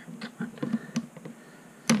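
Small plastic 3D-printed part handled on a printer bed: several light clicks and taps, then one sharper click near the end as it is set down, over a steady low hum.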